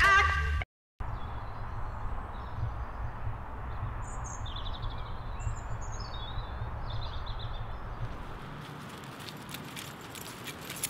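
Title music cuts off just after the start. Then comes outdoor ambience: small birds chirping several times in the middle stretch over a steady low rumble.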